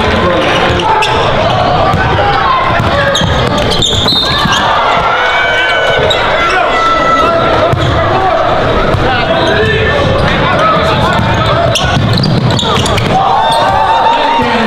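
Basketball bouncing on a hardwood gym floor during play, under a constant chatter of voices from players and spectators.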